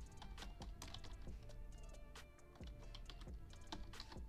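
Faint background music with irregular sharp clicks and taps over it.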